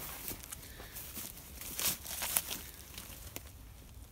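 Footsteps rustling and crackling through dry leaf litter and twigs as irregular short crunches, the loudest about two seconds in.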